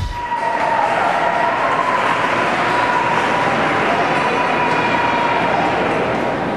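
Steady room noise of an indoor ice rink picked up by a camcorder: an even hiss with a thin steady hum, after background music cuts off at the very start.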